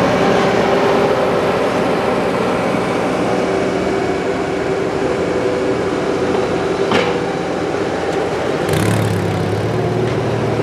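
Bobcat skid-steer loader's diesel engine running close by with a steady hum. There is a single sharp knock about seven seconds in, and a deeper engine note comes in near the end.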